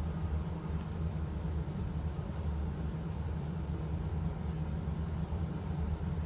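A steady low rumble or hum with no distinct events in it.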